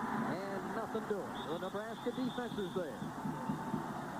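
Speech: television football commentary by a broadcast announcer.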